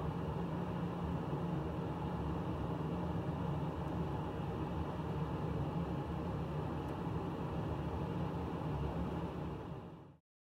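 Steady low hum with hiss, unchanging throughout and fading out near the end.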